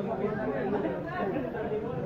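Indistinct background chatter: several people talking at once, none of it clear.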